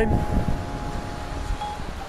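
Wind rumbling on the microphone, with faint, held ringing tones at several pitches that come and go, chime-like.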